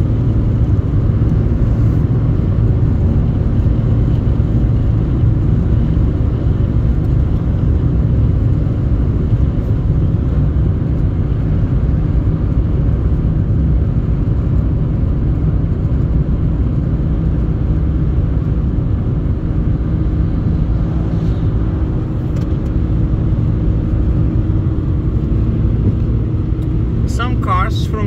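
A car driving at road speed, heard from inside the cabin: a steady low rumble of road and engine noise that holds even for the whole stretch.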